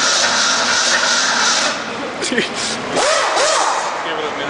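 Rebuilt Ford 302 V8 running on an engine stand, a loud, steady noise, with the number-one connecting rod missing its bearing shell. Voices break in briefly in the second half.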